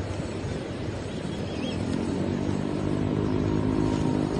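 An engine hum, a steady pitched drone that grows louder from about halfway in, over outdoor background noise.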